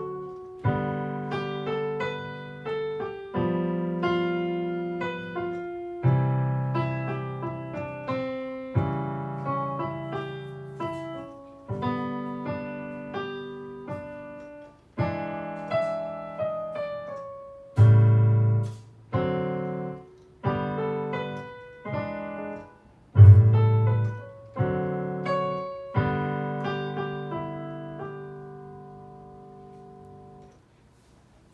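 Digital piano improvisation over the ice cream changes (the I–vi–IV–V chord progression): left-hand chords struck every second or two under a right-hand melody. A final chord is struck near the end and left to fade out.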